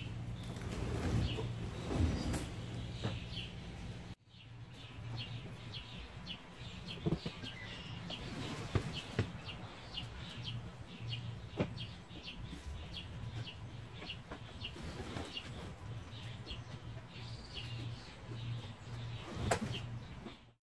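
Small birds chirping in short, repeated calls over a steady low hum, with a few sharp knocks in the middle.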